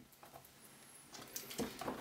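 Light clicks and rubbing of plastic as a laptop's drive-bay cover is fitted back onto its base, faint at first and louder in the last second.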